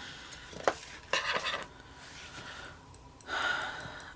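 Paper sticker sheets being picked up and handled, a dry rustling and sliding of paper with a few light clicks.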